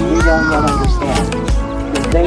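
Music with a steady low beat, over which a single long high note slides slowly downward in pitch for about a second and a half.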